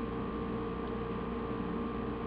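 A steady electrical hum with a few faint constant tones over light hiss, unchanging throughout.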